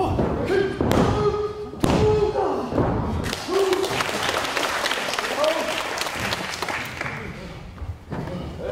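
Three slaps on a wrestling ring's canvas, about a second apart: a referee's pin count, with crowd voices calling out along with it. Then the crowd claps and shouts.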